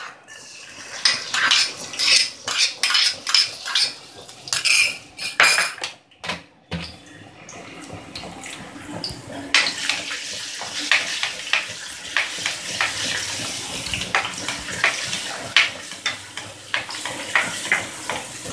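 A spoon scrapes and clinks chopped garlic from a small bowl into a non-stick wok of olive oil. From about seven seconds in, the garlic starts sizzling in the oil, which was not preheated, and the sizzle slowly grows louder under repeated scrapes of a spatula stirring it.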